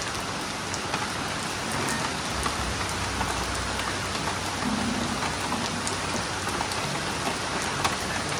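Steady rain falling on a garden and wet paving, an even hiss with scattered sharper drop ticks.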